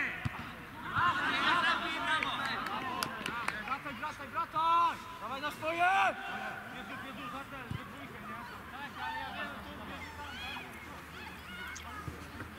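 Several voices shouting short calls across a football pitch during play, the loudest near the start and again about four to six seconds in.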